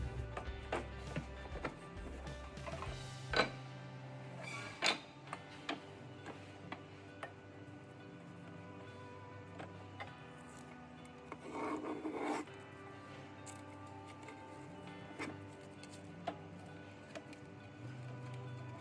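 Soft background music, with scattered light clicks and knocks and a brief rubbing scrape about twelve seconds in, from a wooden drawer and quick-release bar clamps being handled.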